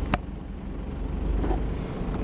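Motor vehicle driving along a paved road: a steady rumble of engine and road noise, with a brief click just after the start.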